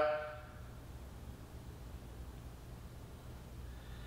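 Quiet room tone with a steady low hum and no distinct events.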